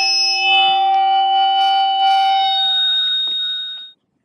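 A loud, steady electronic drone of several held pitches sounding together, like a sustained alarm-like chord; near the end some of the tones drop away as higher ones come in, and it cuts off suddenly.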